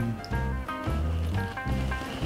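Background music: short melodic notes over a pulsing bass line.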